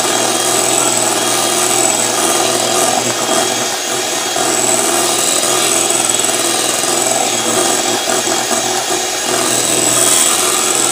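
Electric hand mixer running steadily, its beaters whipping an egg and cream-cheese batter in a glass bowl.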